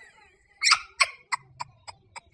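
A woman's stifled laughter: about six short, breathy snickers that come closer together and get shorter.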